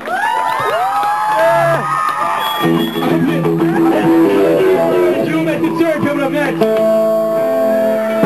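Electric guitars of a live blues-rock band: sliding, wavering notes for the first couple of seconds, then held chords changing step by step, with one note ringing on steadily near the end.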